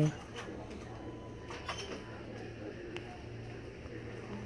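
A steady low hum with a few faint, short clicks scattered through it.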